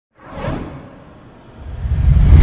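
Logo-intro whoosh sound effect that sweeps in about half a second in and fades away. A deep rumble then starts to swell near the end as the intro music builds.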